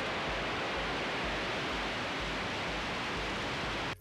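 Falcon 9 first stage's nine Merlin engines at liftoff, an even, steady rushing noise as the rocket climbs off the pad. It cuts off suddenly just before the end.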